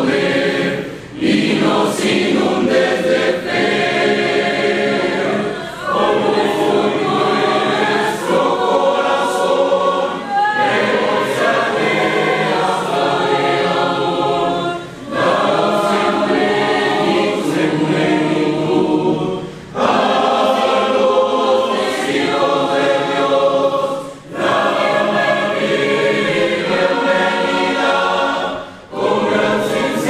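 A mixed youth choir of young men and women singing a Spanish-language hymn, phrase after phrase, with a short break between phrases about every four to five seconds.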